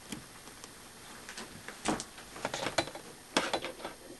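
Hand handling of wires with insulated crimp connectors against the metal plate tabs of a stacked-plate cell: irregular clicks and rattles in three short clusters, about two, two and a half, and three and a half seconds in.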